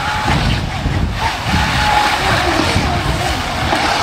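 Small RC water-jet boat running through shallow creek water: a faint wavering motor whine over a steady rushing noise.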